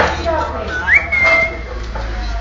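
A green parrot whistling: one clear whistled note that leaps upward about a second in and is held for roughly half a second.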